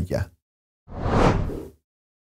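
A single whoosh transition sound effect about a second in: a noisy swell that rises and fades within about a second.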